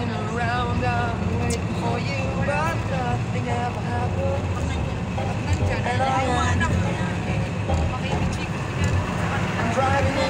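Steady low rumble of engine and road noise inside a moving car cabin at highway speed, with voices over it.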